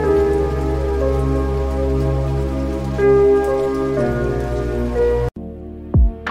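Instrumental music of sustained chords that change every second or so, with a fine hiss like rain over them. The music cuts off abruptly about five seconds in, and after a moment of near silence a sharp, loud struck note begins right at the end.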